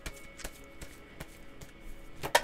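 A deck of oracle cards being shuffled by hand: a handful of soft, scattered flicks and taps of the cards. Faint steady background music sits underneath.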